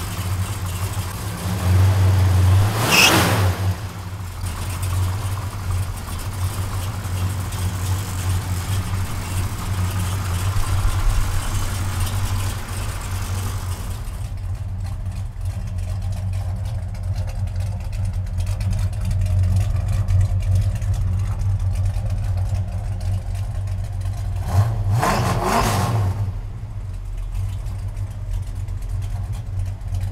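Ray Barton 472 cubic-inch Hemi V8 running steadily, blipped briefly twice, about three seconds in and again near 25 seconds.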